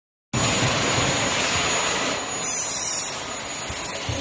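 Plastic thermoforming machine running: a steady, loud rushing noise with a low rumble, cutting in abruptly just after the start.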